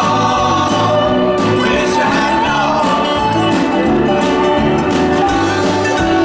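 Live roots-country band playing a song, with several voices singing in harmony over acoustic guitar, mandolin, upright bass and drums.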